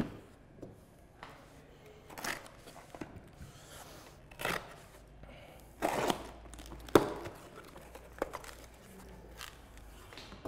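A small cardboard box being opened by hand: tape tearing and cardboard flaps rustling in short scattered bursts, with one sharp click about seven seconds in.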